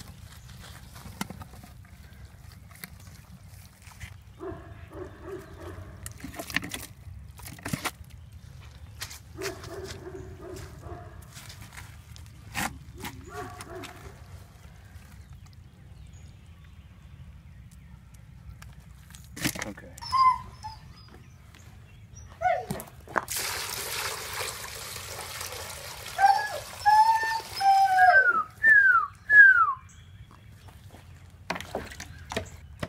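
Shovel digging in wet clay, with scraping and a few sharp knocks from the blade. Near the end come a few seconds of steady rushing noise, then several short calls that rise and fall in pitch.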